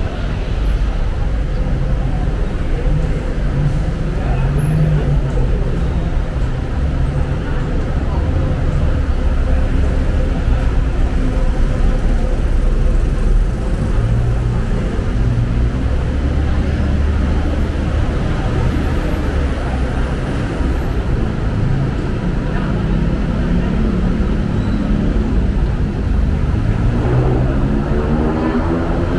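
Steady rumble of busy city road traffic below an elevated walkway, with engines running continuously. Near the end, one vehicle's engine rises in pitch as it speeds up.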